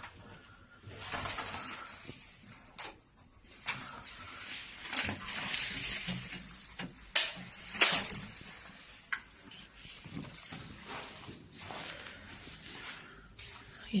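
Footsteps scuffing and crunching over debris and broken glass on a floor and stairs, irregular, with a few sharper crunches a little past the middle.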